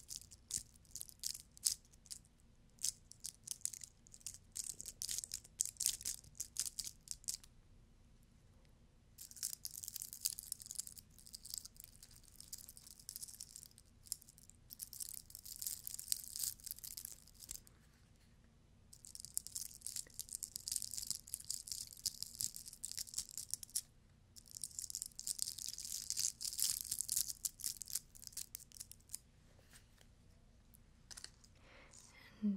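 Glitter-covered craft Easter eggs rubbed and scratched close to a microphone. For the first seven seconds or so there is a run of fine crackling clicks. After that come four stretches of dense, high-pitched crinkling hiss, each a few seconds long, with brief pauses between them.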